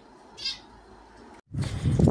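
A small animal's single brief, high-pitched cry about half a second in, over quiet room tone. Near the end the sound cuts abruptly to much louder outdoor street noise.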